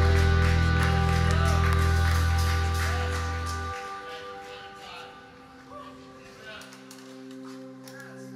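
Live worship band holding a sustained chord with a heavy bass that drops out about four seconds in, leaving a softer held chord. A few scattered claps come through.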